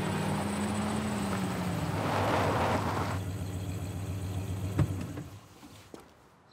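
A motor vehicle running, its noise swelling and then fading away near the end, with a single sharp knock shortly before it dies out.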